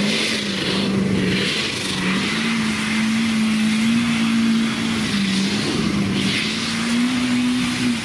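A car engine held at high revs at a steady, slightly wavering pitch, with a rushing hiss that swells and fades a few times. The engine note drops away at the very end.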